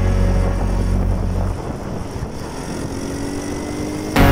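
Background music for the first second and a half, then a small scooter engine running on the move under low wind rumble on the microphone.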